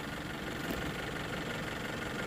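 First-generation Toyota RAV4's four-cylinder engine idling steadily.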